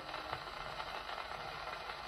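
Surface noise of a 78 rpm shellac record on an HMV 130 gramophone: faint hiss and crackle with a few small clicks as the needle runs on at the end of the record, the music over.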